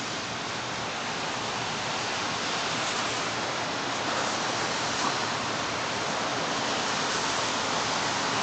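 A steady, even hiss of thunderstorm weather outside, growing slightly louder over the seconds.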